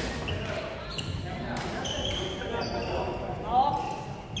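A badminton rally: rackets hitting a shuttlecock every second or so, with court shoes squeaking on the wooden floor, in a large echoing sports hall. Players' voices carry throughout, one rising sharply and loudest near the end.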